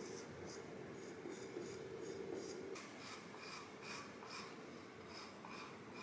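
Metal trimming blade scraping and shaving chips from the wall of a red-clay Raku tea bowl: a run of short, faint scrapes, about two a second.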